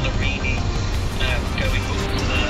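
Steady road and engine rumble inside a moving car's cabin, with background music over it.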